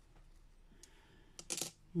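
Small rune stones clicking against each other and the surface as they are handled and set down: a few light clicks, the loudest near the end.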